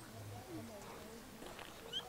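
Faint outdoor background in a lull: quiet, scattered distant voices, with one short high chirp just before the end.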